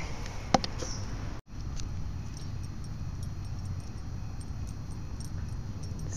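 Steady low outdoor rumble with faint light ticking and a sharp click about half a second in. The sound cuts out for an instant about a second and a half in.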